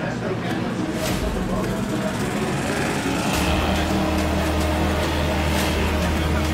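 Racing jet skis running at speed: a continuous engine drone mixed with the hiss of water spray, under background music. A low steady hum gets stronger a little past halfway through.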